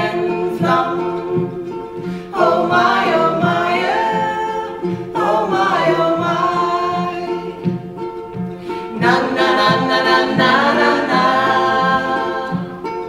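Live music: a women's vocal group singing in harmony over steadily strummed ukuleles and guitar.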